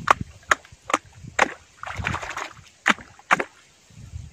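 A hand slapping and splashing the muddy water of a small swamp hole: a run of sharp splashes, about two a second, with a longer sloshing splash around two seconds in.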